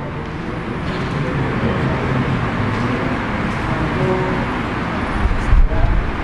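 Steady background noise with faint, distant voice fragments, as of a student reciting away from the microphone, and a brief low thump near the end.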